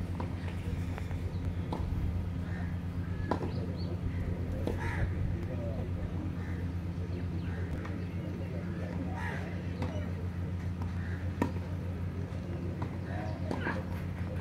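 A tennis rally on a clay court: sharp pops of racket strings striking the ball, a second or more apart and irregular, over a steady low hum.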